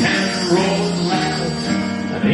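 A live big band orchestra playing an instrumental passage of a song.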